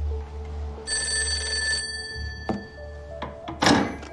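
Old-fashioned desk telephone bell ringing once, a burst of about a second whose tones die away. Then a few clicks and a short, loud clatter near the end as the receiver is lifted.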